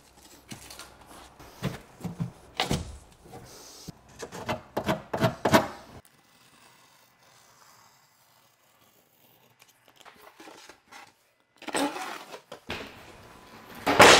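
Rigid foam building panels being handled and test-fitted: irregular rubbing and scraping with a few light knocks. The sounds come in two clusters, the first six seconds and again later, with a near-silent gap between.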